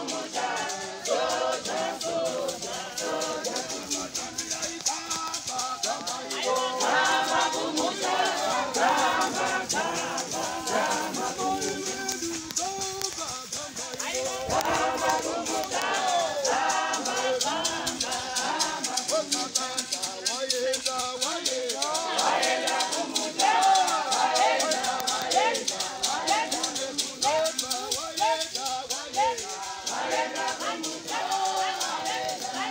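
A church congregation singing together, accompanied by a shaker keeping a steady rhythm.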